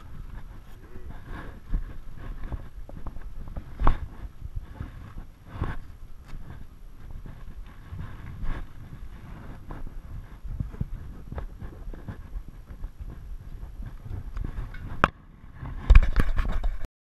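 Low, uneven wind rumble on the camera microphone, with a few scattered knocks and a sharp click near the end as the camera is handled.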